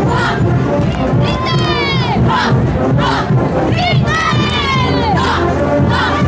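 A group of women dancers shouting high cries together, the shouts of the Tinku dance, each cry sliding down in pitch, in two bursts with a pause between, over steady crowd noise.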